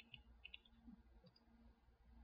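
Near silence with a few faint clicks from a computer mouse, in small pairs during the first second and a half, over a low steady hum.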